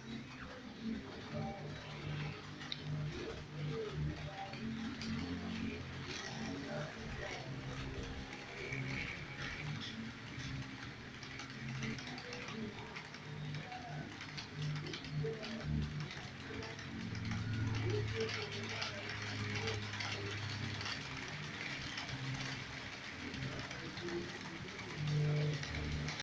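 Model freight train running on a model railway layout, with a steady clicking, gear-like mechanical rattle from the train on its track.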